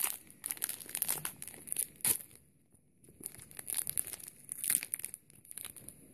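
Foil trading-card packet crinkling and tearing as it is pulled open by hand, in irregular crackles with a short pause about two and a half seconds in.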